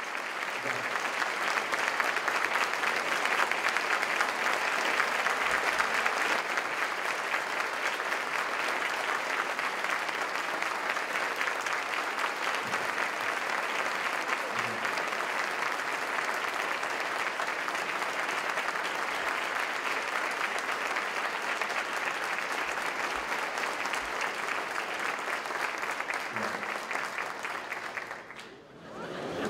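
Applause from a large audience, many people clapping at once. It builds over the first couple of seconds, holds steady, and dies away near the end.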